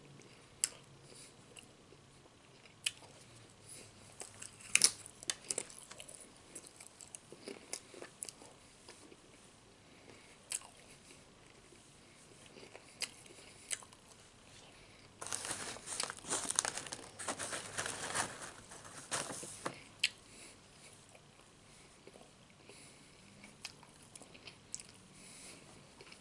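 Nacho Cheese Doritos tortilla chips crunched and chewed close to the microphone. Scattered sharp crunches come first, the loudest cluster about five seconds in, then a denser run of crunching and crinkling from about fifteen to twenty seconds.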